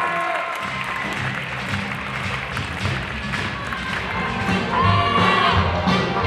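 Latin dance music with a steady bass beat kicks in about half a second in, with audience applause and cheering underneath.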